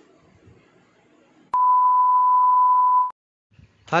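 A steady electronic beep tone at a single pitch, lasting about a second and a half, starting about halfway in and cutting off suddenly. Before it there is only faint room noise.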